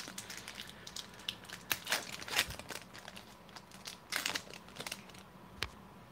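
Foil-lined wrapper of a 1995-96 Fleer basketball card pack being torn open and crinkled by hand as the cards are pulled out. It makes irregular crackles, loudest about two seconds in and again around four seconds.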